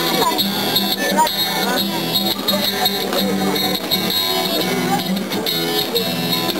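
Acoustic guitar being played, steady strummed or picked chords opening a song, with crowd chatter around it.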